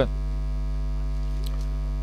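Steady electrical mains hum picked up by the microphone and sound system: an even, unchanging low buzz.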